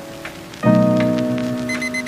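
Background music: a sustained chord enters sharply about two-thirds of a second in and slowly fades, over a crackling, rain-like patter of soft clicks, with short high beeps near the end.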